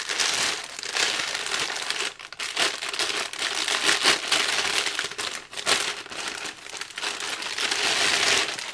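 A thin clear plastic bag crinkling and rustling continuously as it is worked off a monitor stand part, with a few brief pauses.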